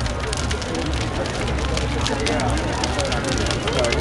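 Large sculpture burning in a big open fire: steady crackling with many sharp pops over a low rumble of flames. A crowd's voices chatter throughout.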